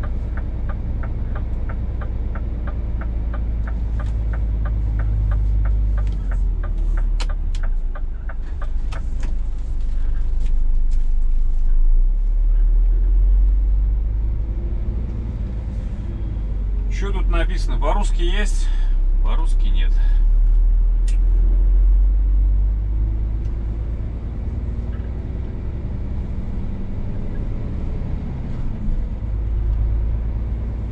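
Scania S500 truck's diesel engine running low and steady in the cab while manoeuvring at low speed. For the first several seconds the turn-signal indicator relay ticks about three times a second.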